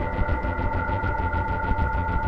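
Ambient electronic music played on synthesizers: several long held notes, a new higher one entering at the start, over a fast, steady pulsing low throb.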